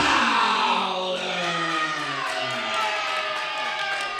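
A ring announcer's long, drawn-out call introducing the champion, one held voice that slowly falls in pitch, with music behind it.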